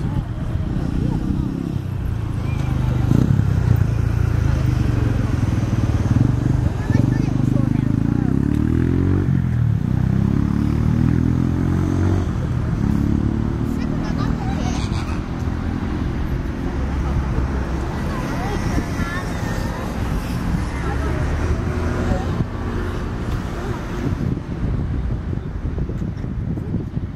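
Small sightseeing boat's engine running steadily, its pitch rising and then dropping back a few seconds in.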